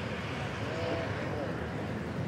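Busy street ambience: a steady hum of traffic with faint voices in the background.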